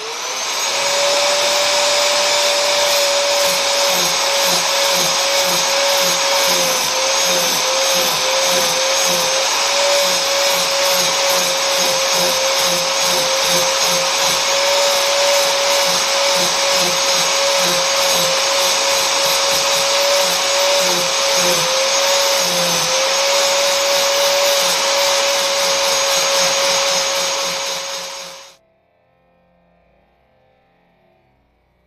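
Handheld power tool with a steady motor tone, shaping a wooden hatchet handle of African padauk. Its pitch wavers and sags in places as it is pressed into the wood, and it cuts off near the end.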